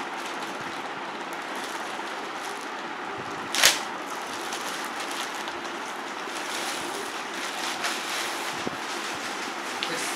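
Clear plastic packaging bag rustling and crinkling as a backpack is worked out of it, with one sharp, louder crackle about three and a half seconds in.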